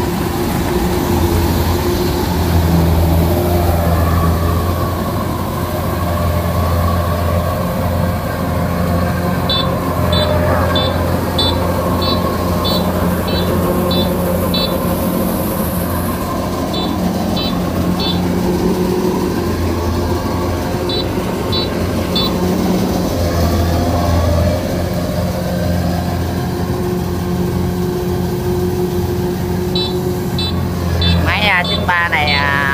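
Kubota DC-93 Extra combine harvester working at close range, cutting and threshing rice: a loud, steady low drone of engine and threshing machinery with chopped straw being thrown out the back. A faint high ticking, about two a second, runs through the middle stretch.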